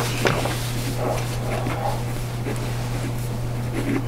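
A steady low hum fills a meeting room, with a few light clicks and rustles of papers being handled at the table.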